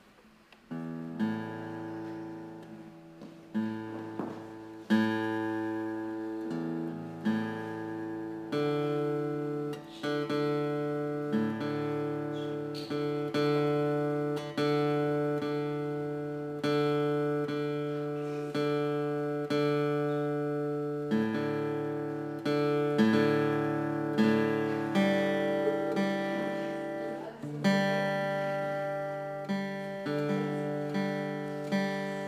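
Acoustic guitar strumming slow chords, each strum ringing out and fading before the next, about one every second or two and a little quicker near the end.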